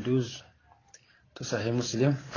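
A man's voice speaking in short phrases, with a pause of about a second in the middle and a faint click during the pause.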